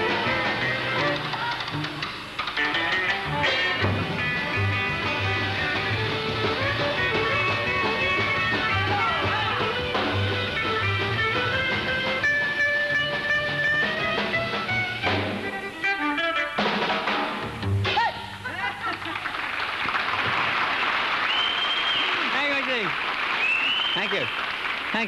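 A skiffle band playing, with guitar, drums and a steady line of double bass notes. The music stops about three-quarters of the way through and a studio audience applauds.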